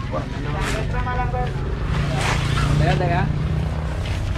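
A motor vehicle engine running steadily with a low hum that grows louder toward the middle, while corrugated galvanized iron roofing sheets are lifted and carried. Voices talk in the background.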